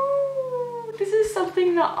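A woman's long, drawn-out vocal sound: one held note that rises slightly and then falls, lasting about a second, followed by speech.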